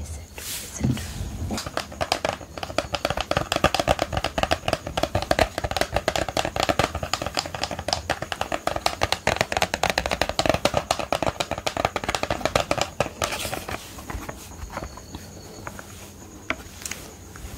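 Rapid, dense fingernail tapping and scratching on the lid of an eyeshadow palette case. It starts a second or two in and stops about three seconds before the end.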